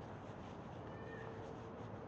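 A faint, drawn-out animal call, about a second long, starting just under a second in, over a steady outdoor background hiss.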